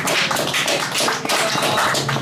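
A few people clapping, the individual claps distinct and irregular.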